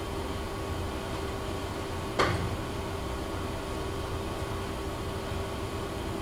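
Steady low room hum with a faint steady tone, broken once by a single sharp click about two seconds in.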